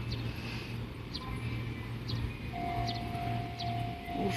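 Steady low electrical hum from Fujikyu 6000 series (ex-JR 205 series) electric trains standing at the platform. A thin steady high tone joins it about halfway through, with a few light ticks.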